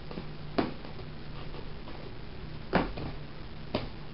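Three sharp plastic knocks as hands handle a clear plastic terrarium and its mesh lid, the middle one the loudest, over a steady low hum.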